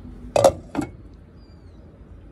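Glass saucepan lid clinking against the metal pot, two sharp clinks about half a second apart.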